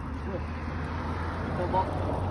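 A car passing on the road, its tyre and engine noise swelling through the second half, with faint voices.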